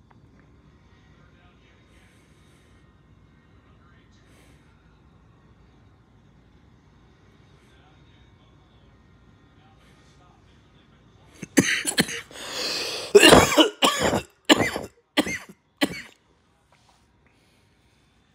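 A person coughing hard and close to the microphone, a fit of about eight coughs over roughly four seconds, after a long stretch of only a faint low hum.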